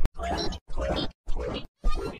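Heavily distorted, stuttering sound-effect loop: short grunting, voice-like snippets cut off abruptly and repeated about twice a second, with silent gaps between them.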